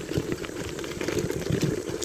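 Bicycle rolling over a gravel track: a steady crunch of tyres on loose stones, with many small clicks and rattles.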